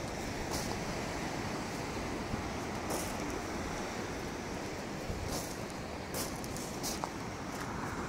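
Small waves breaking and washing up a beach, with wind on the microphone, as a steady rushing noise. A few brief high crackles break through it.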